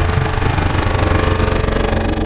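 Electronic drum and bass music: a dense, gritty texture with a rapid fine pulse over heavy bass.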